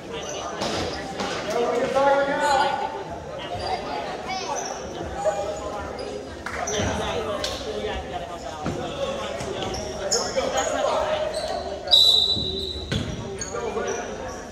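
Basketball game sounds in a large gym: a ball bouncing on the hardwood with indistinct voices of players and spectators echoing around the hall. A brief high-pitched tone sounds near the end.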